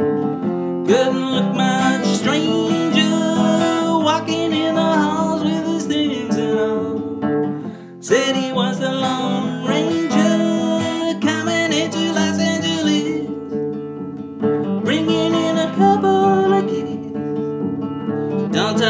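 Steel-string acoustic guitar strummed in a steady rhythm, with a man singing along in short phrases, a brief break about eight seconds in.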